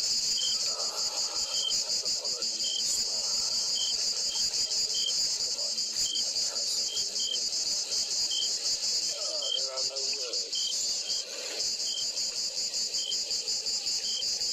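A steady, high, pulsing chorus of insects trilling, with short separate chirps repeating at uneven intervals over it.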